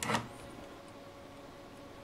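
Quiet room tone with a faint steady hum, after a brief short noise right at the start.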